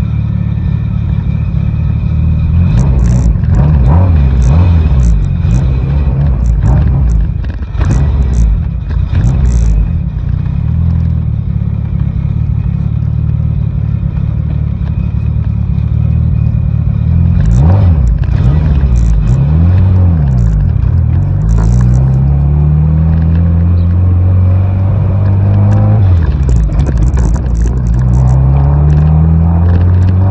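Car engine, newly fitted with new camshafts, pulling through the gears as heard from inside the cabin. Its pitch bends up and down, then twice in the second half climbs steadily and drops suddenly at an upshift.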